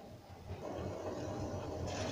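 Pot of herbal tea boiling on a gas stove: a steady low rumble that comes in about half a second in.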